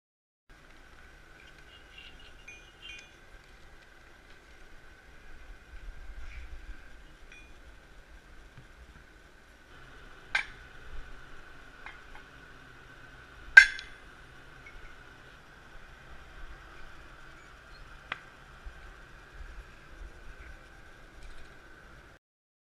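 A hammer striking a glass colour bar against a steel wedge to knock off a chunk. There are a few sharp clinks in the second half, the loudest about two-thirds of the way through, over a steady high-pitched hum.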